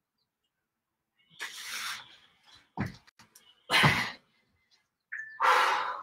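A woman breathing hard and forcefully from exertion during push-ups and donkey kicks, with four loud, short, huffing breaths about a second or so apart.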